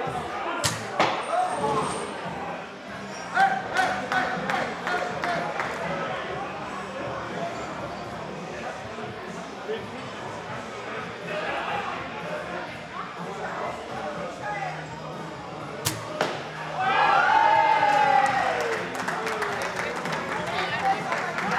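Crossbow shooting at a wooden bird target: a few sharp snaps in the first four seconds and one sharp snap about 16 seconds in, over the murmur of an onlooking crowd. Right after that last shot the crowd cries out loudly, the voices falling in pitch.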